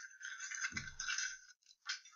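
Paper rustling and crinkling as cut-out magazine pieces are handled and gathered on a newspaper-covered table, with a soft bump a little before halfway through and a couple of short crinkles near the end.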